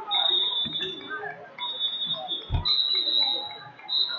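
A wrestling referee's whistle: several long, steady, high blasts of about a second each, over crowd chatter in a gym. A dull thump sounds about halfway through.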